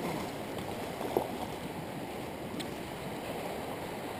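A small, fast-flowing stream rushing steadily over its bed, with one brief faint blip about a second in.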